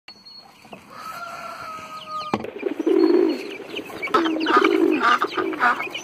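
Farmyard poultry calling in a quick run of repeated clucking calls, roughly two a second, loudest from about three seconds in. Before that a thin steady whistle-like tone and a single sharp click.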